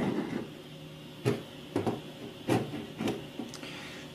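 Plastic DIN-rail housings of PLC controller boards being slid across a tabletop and pushed against each other, giving a handful of light, irregularly spaced knocks and clicks.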